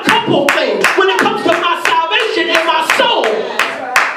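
Congregation clapping in a steady rhythm, about three claps a second, under a preacher's voice chanting in held, sung notes.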